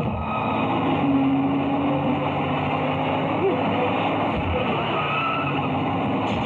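Heavy truck engine running steadily as the truck drives, a film sound effect.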